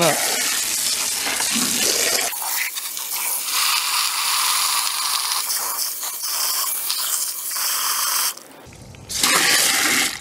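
Water spraying from a garden hose spray nozzle into a plastic ice chest, splashing onto ice and meat as it fills with water for a salt-and-sugar brine. The spray cuts off briefly near the end, then runs again for about a second.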